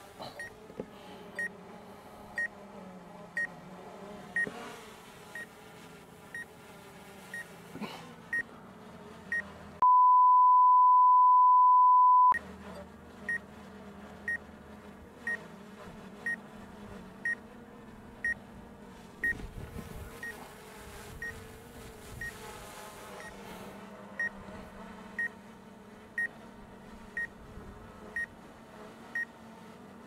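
A drone hovering with a faint steady buzz, under a short high beep that repeats about once a second. About ten seconds in, a loud steady censor bleep tone blanks out everything else for about two and a half seconds.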